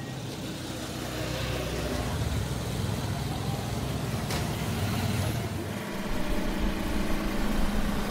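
Motor traffic passing on the street: engine rumble and road noise building through the first half, with a single sharp click about four seconds in.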